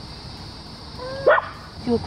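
A dog gives one short, rising yip about a second in, over a steady high hiss of insects.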